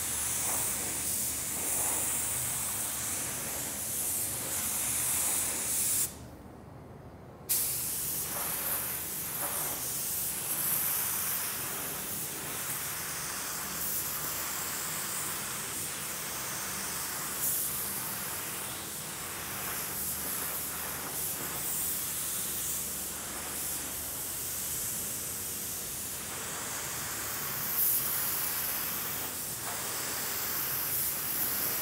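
Gravity-feed paint spray gun hissing steadily as it sprays primer onto a car fender in overlapping passes. The hiss cuts off about six seconds in for a second and a half, then runs on.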